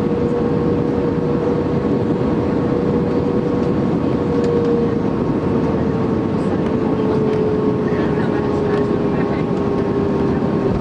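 Airbus A320 cabin noise heard from a seat over the wing as the plane rolls on the ground after landing: the twin jet engines' steady roar and rush, with a tone that slowly falls in pitch.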